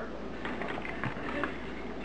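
Quiet room tone: a steady low hum under faint background noise.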